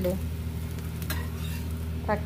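A thin rice-flour dosa sizzling on a hot griddle while a spatula scrapes under it and folds it over, with one short scrape about a second in.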